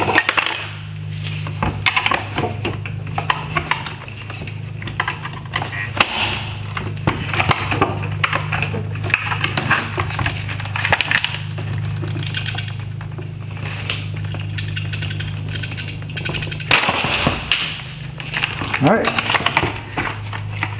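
Repeated sharp clicks, knocks and scrapes of a pry tool on the plastic and metal of a Tesla Model 3 headlight housing as stubborn plastic clips are worked off their metal mounts. Under it runs a steady low hum that drops away near the end.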